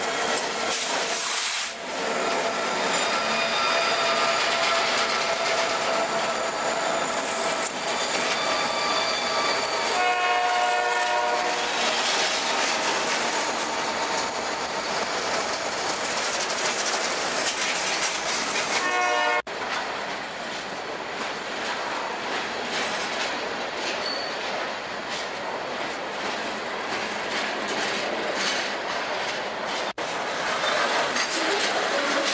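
Canadian Pacific freight train passing close by: diesel locomotives and then freight cars rolling past, the wheels clicking over the rail joints. A train horn sounds for several seconds in the middle. About two-thirds through the sound breaks off suddenly, and then slightly quieter, steady rolling of the cars goes on.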